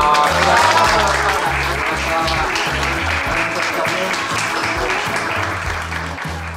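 A group of people clapping, with music and a steady bass beat underneath.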